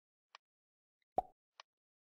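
A computer mouse button clicked once, sharply, a little over a second in, with two much fainter ticks, one before and one after.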